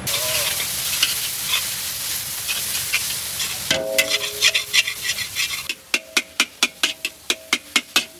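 Food sizzling in a hot pan, then a metal spatula striking and scraping a steel wok as noodles are stir-fried, the wok ringing. Over the last couple of seconds the strikes fall into a quick, regular rhythm of about four a second.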